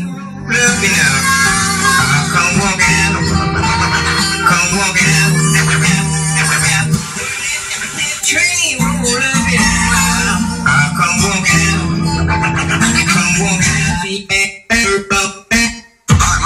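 A song with guitar playing from the FM radio of a 1960s Packard-Bell RPC-120 stereo console, heard through the console's speakers. Near the end the sound cuts out abruptly several times for a moment.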